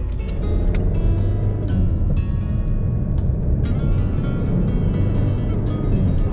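Mazda Atenza's 2.2-litre SKYACTIV-D turbodiesel heard from inside the cabin, pulling under acceleration as a steady low rumble that grows louder within the first second. Music plays over it.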